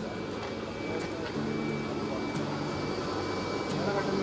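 Steady mechanical drone, typical of the air blower that aerates a biofloc fish tank, with voices talking over it.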